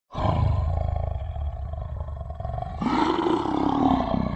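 Lion roaring: a low, pulsing rumble, then about three seconds in a louder, higher roar.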